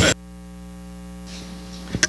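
Steady electrical mains hum from the sound system, with many fine overtones, and a short thump just before the end.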